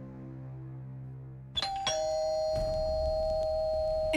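Doorbell chime about one and a half seconds in: two quick strikes, then two held tones ringing on, over a fading background music drone.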